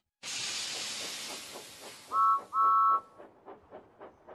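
Cartoon steam locomotive sound effect: a sudden burst of steam hiss that fades away, two short two-note whistle toots about two seconds in, and steady chuffing at about five puffs a second.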